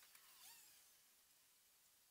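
Near silence: faint room hiss, with a faint brief chirp about half a second in.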